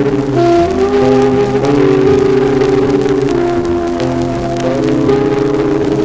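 Dance orchestra playing a slow number in sustained, held chords that change about once a second, played back from a 1940s transcription disc with faint surface crackle.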